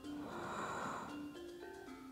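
Soft background music of slow, held notes changing pitch step by step. A breath whooshes over it from about a quarter second in and lasts about a second.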